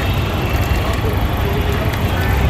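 Steady low drone of a small generator engine powering a sugarcane juice machine while cane is crushed and juice pours out, with faint voices in the background.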